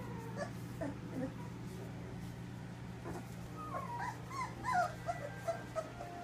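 Three-week-old Labrador puppies whimpering: a few short squeaky cries in the first second or so, then a quicker run of high, wavering whimpers from about halfway through.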